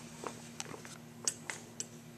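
Several light clicks and taps of a cast-iron tractor carburetor and its gasket being handled on a steel workbench, a handful of separate ticks over a faint steady hum.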